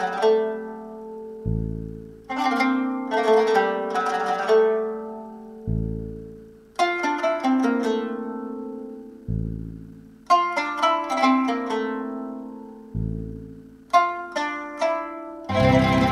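Arabic-style music on a plucked zither: quick runs of notes that ring and die away, in phrases of a few seconds, each opened by a deep low note. Near the end a fuller, denser ensemble sound comes in.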